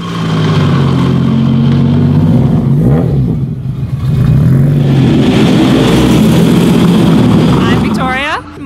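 Modified drift car engines running at low revs, a steady deep engine note with small rises and falls in pitch. The note dips briefly about three seconds in, then carries on at a similar steady pitch.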